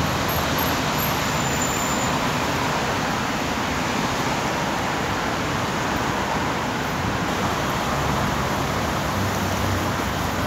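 Steady city road traffic: an even wash of passing vehicles and tyre noise with a low rumble underneath.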